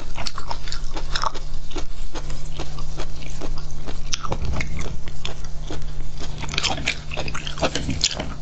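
Close-miked ASMR eating sounds of raw shellfish: a string of short wet clicks and crunches from handling and chewing the slices, denser near the end as a piece is bitten. A steady low hum sits underneath.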